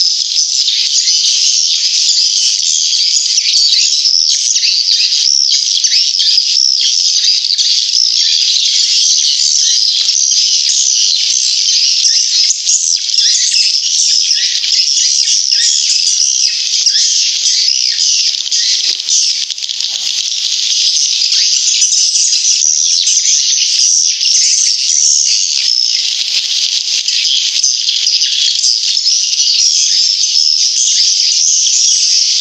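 Recorded swiftlet lure call: a dense, continuous mass of high-pitched twittering and chirping from many swiftlets, played as a swiftlet-house sound to attract the birds to nest.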